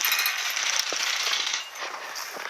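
Dry grass and brush rustling and crackling loudly close to the microphone as someone pushes through it on foot, easing off somewhat near the end.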